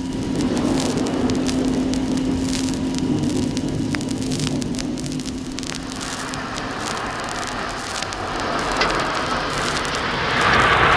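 Rain and a car's steady engine drone as record sound effects, heard through the clicks and pops of a vinyl record's surface noise. The drone fades about two-thirds of the way through as a rushing hiss builds.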